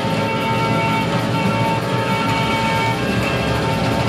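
Live zeuhl/spiritual-jazz band music: a held chord with a long steady high note that ends about three seconds in.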